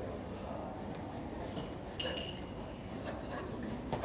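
Quiet hall ambience with faint background voices, broken by one short, sharp high-pitched click about two seconds in and a smaller knock near the end.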